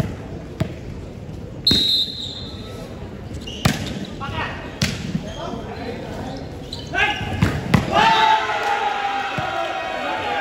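A volleyball is bounced twice on the hard court before a serve, then a short, loud referee's whistle blast sounds. Sharp hits of hands on the ball follow as the serve and rally are played. From about eight seconds in, the crowd is shouting and cheering.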